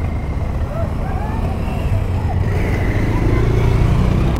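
Low, steady rumble of an idling motor vehicle engine, growing a little louder near the end, with faint voices in the background.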